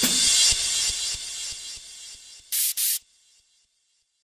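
Closing seconds of an electronic breakcore track: a loud, distorted wash of noise with kick-drum hits fades out over about two and a half seconds, then two short bursts of noise, then the sound cuts away to silence.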